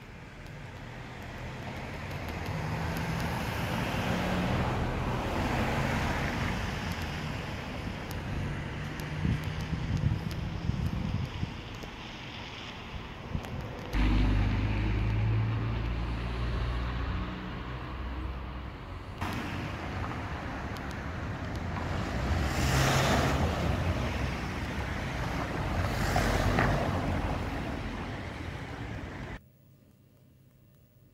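Outdoor street traffic noise with a low rumble, swelling twice as vehicles pass in the last third, then cutting off suddenly.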